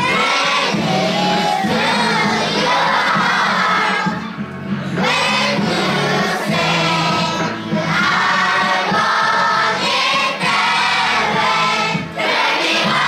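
A large group of children singing together in unison along with a recorded backing track that has a steady bass line.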